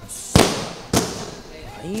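Two boxing-glove punches landing on hand-held punch pads: two sharp smacks about half a second apart. A woman's voice cries out near the end.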